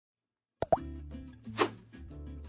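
Silence for about half a second, then a sharp pop that opens a short logo jingle: held low notes and a chord, with another brief accent about a second later.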